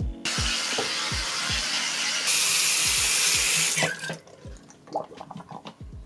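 Bathroom sink tap running: the water hiss starts just after the beginning, gets louder about two seconds in, and stops about four seconds in. Background music with a steady low beat plays throughout.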